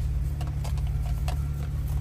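Steady low rumble of an Audi car driving, heard inside the cabin, with a few faint scattered clicks.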